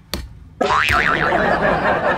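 A cartoon-style 'boing' sound effect: a sudden loud onset about half a second in, with a pitch that wobbles quickly up and down, over a dense noisy layer that carries on.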